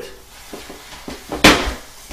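Rubber balloon being handled as a thin skewer is worked into its side: soft rubbing and small clicks, with one louder, brief rub about one and a half seconds in.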